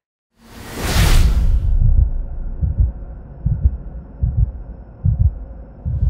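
Logo-intro sound effect: a whoosh about a second in, then a steady run of low pulses a little under a second apart, like a heartbeat, under a faint hum.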